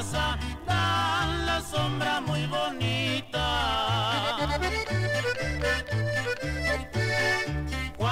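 Norteño band music: an accordion plays a wavering, ornamented melody over a steady alternating bass line of about two notes a second.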